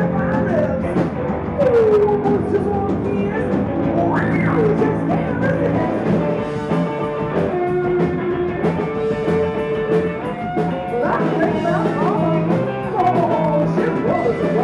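Live rock band: a woman singing into a microphone, her voice sliding up and down in pitch, over electric guitar and drum kit.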